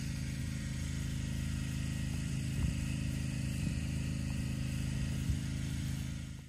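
A car engine idling steadily, a low even hum, with a few faint knocks.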